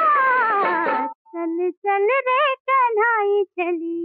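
Hindi film-song orchestra whose lines slide downward together in the first second and then stop. The music breaks into about six short, separate pitched notes that bend up and down, with brief silences between them.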